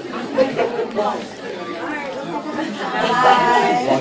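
Several people talking at once: overlapping chatter, with one voice growing louder near the end.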